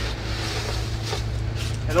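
Dry leaves and a plastic trash-can liner rustling as hand-held leaf scoops press leaves down into the bin, over a steady low hum.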